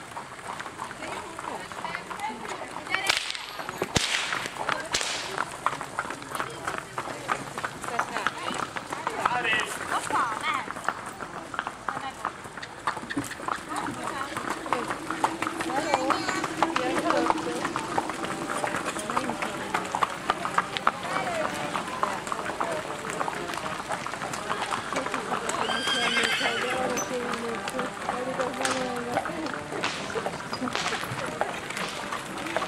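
Horses' hooves clip-clopping on an asphalt road as riders and horse-drawn carts go past, many hoofbeats overlapping, with people's voices talking over them.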